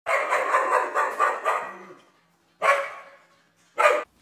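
A dog barking: a quick run of barks lasting about a second and a half, then two single barks, the last near the end.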